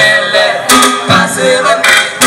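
A group of male voices singing a song together through a stage microphone, with sharp percussive hits of a beat running under the melody.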